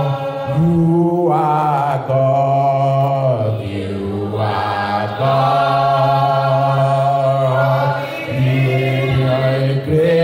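Slow worship singing by voices, holding long drawn-out notes of one to three seconds each with short breaths between.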